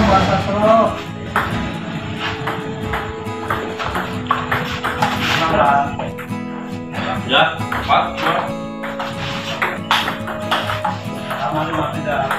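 Table tennis ball clicking sharply off paddles and table in a rally, heard over background music with voices.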